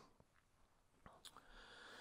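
Near silence: room tone, with two faint clicks a little past a second in.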